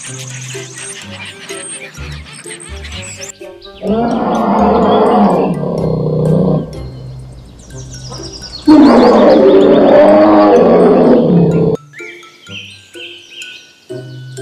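Two long, loud roars from a large wild animal, the second louder, over background music with a steady bass line.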